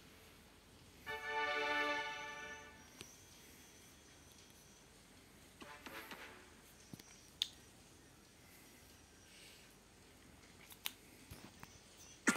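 A short electronic game tone, a steady chord-like note lasting about a second and a half, from an online lottery game app. After it comes near quiet with a few faint clicks.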